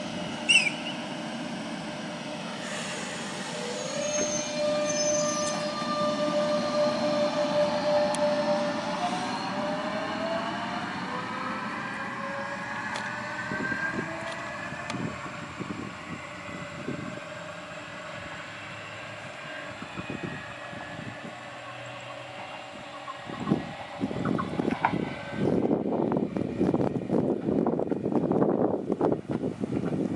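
Renfe Cercanías electric multiple unit pulling out and accelerating, a whine from its traction equipment rising in pitch over several seconds above the rumble of the wheels, then fading as it draws away. In the last few seconds gusts of wind buffet the microphone.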